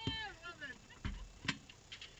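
A high-pitched wordless vocal sound, drawn out and falling away in pitch, then two sharp clicks about a second and a second and a half in.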